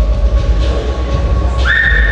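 Background music with a heavy bass; about a second and a half in, a shrill whistle from the audience rises quickly to a high note and holds it.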